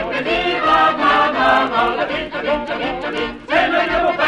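Group of voices singing a French bawdy drinking song (chanson paillarde) together, with a short break about three and a half seconds in before the next phrase starts.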